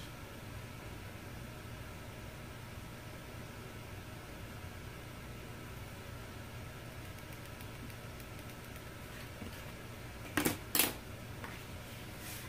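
Steady low room hum, broken near the end by two sharp knocks about half a second apart as a ruler and pen are set down on a hardwood floor.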